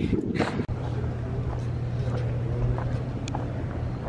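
A steady low hum over outdoor background noise, with a few faint taps about half a second apart. It follows a brief laugh near the start.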